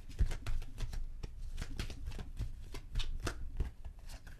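Tarot cards being shuffled by hand: a quick, irregular run of soft card clicks and flicks.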